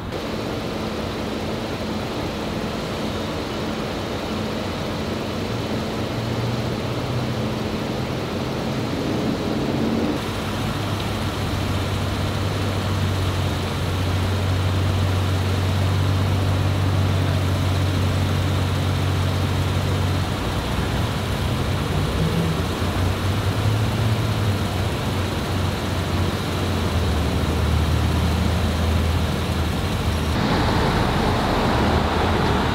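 Steady low hum of motor vehicle engines idling with traffic noise around them, its pitch and level shifting about a third of the way through and again near two-thirds.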